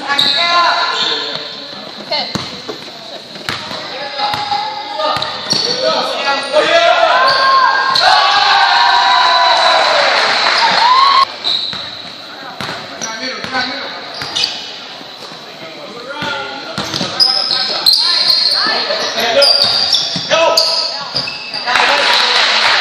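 Basketball bouncing on a hardwood gym floor during play, with voices calling out in the echoing gym, loudest around the middle.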